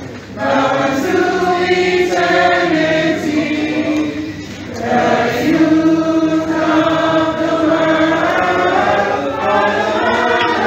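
A group of voices singing together in long, held notes, with a brief break just after the start and another about four and a half seconds in.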